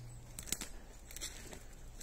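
Quiet forest ambience with a few faint crackles and sharp clicks; a faint low hum stops about half a second in.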